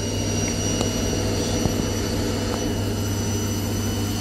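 Washing machine spinning its drum: a steady motor hum with a low drone and a constant high whine.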